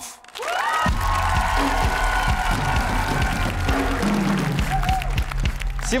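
Live drum kit played hard with sticks, drums and cymbals, over sustained instrumental music that comes in about a second in after a brief hush.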